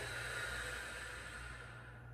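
A woman's long audible exhale, a breathy hiss that fades away over about two seconds, breathed out during the forward curl of a Pilates exercise.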